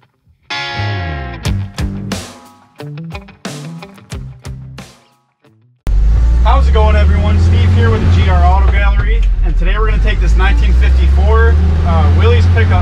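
Background guitar music for the first half, then, about six seconds in, a sudden change to the 1954 Willys pickup's engine running in a steady low drone, heard from inside the cab, with talking over it.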